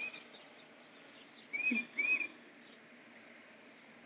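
Tufted titmouse calling: short clear arched whistles, one at the start and a pair about a second and a half in.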